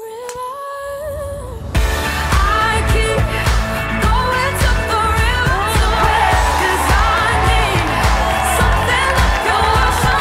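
Pop song with a singing voice. A held sung line opens, then the full band with a steady drum beat comes in about two seconds in.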